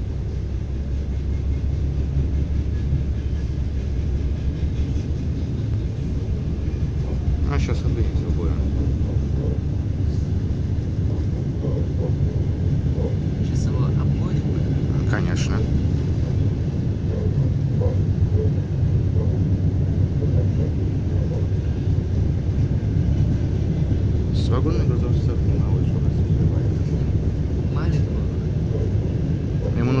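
Steady low rumble of an ES2G electric train running along the track, heard from inside the carriage, with a few brief higher clicks or squeaks.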